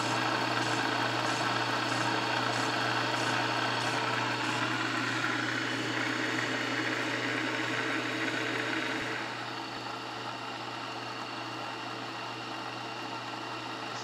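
Burke horizontal milling machine running a side milling cutter through a roughing pass on the bevels of three metal scraper blanks clamped together in the vise: a steady machine hum under a cutting hiss. About nine seconds in the cutting noise falls away and the machine runs on more quietly.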